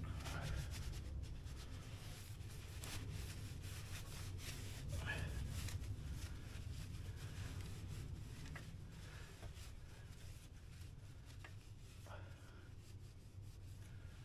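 Faint rubbing and rustling of a rag being wiped around a motorcycle's rear hub and axle, with a few light clicks, over a low steady hum.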